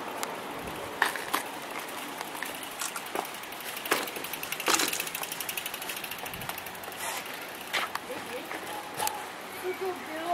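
Bicycle being ridden along a paved road: steady tyre and wind noise with a scatter of sharp clicks and rattles from the bike.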